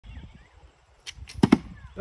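Archery with bows: a quick series of about four sharp snaps and thwacks starting about a second in, the loudest pair close together near the end.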